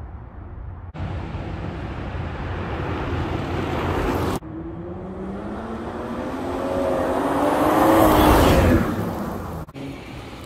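BMW M440i convertible's turbocharged inline-six driving by under acceleration: the engine note climbs steadily in pitch and loudness to a peak about eight seconds in, then falls away. Earlier, the road and engine noise breaks off abruptly twice.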